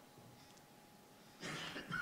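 Near silence, then near the end a short breathy throat sound from the man at the lectern microphone, lasting about half a second.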